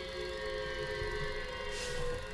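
A sustained electronic music drone: several steady tones held together as a chord, with a short hiss near the end.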